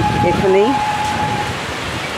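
Steady rain falling. A voice sounds briefly within the first second, and a single held tone cuts off about a second and a half in.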